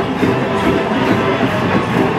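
College marching band playing in a stadium: sustained brass chords over a steady, regular drum beat.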